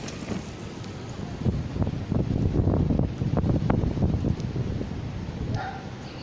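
Wind buffeting a phone microphone: an irregular low rumble that swells about a second and a half in and eases off near the end.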